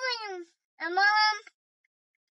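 Toddler babbling: two short, high-pitched wordless calls that fall away in pitch, the second starting about a second in.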